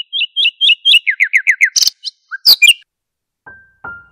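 Birdsong: a string of quick two-note chirps, then a run of about five short falling notes, then a few sharp, loud calls. A couple of piano notes come in near the end.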